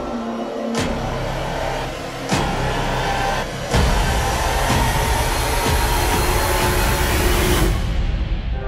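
Film trailer soundtrack: dark music with heavy sound design, a rushing noise that builds in steps with sudden hits about one, two and a half, and four seconds in. The high hiss cuts off sharply just before the end.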